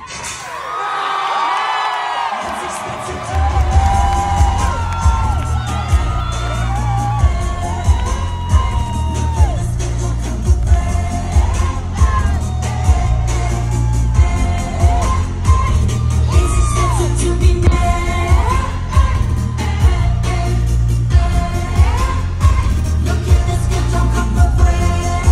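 Live pop dance music played loud through a concert PA: singing over synths, with the bass and beat dropped out for the first few seconds and coming back in about three seconds in as a steady, heavy kick-drum beat.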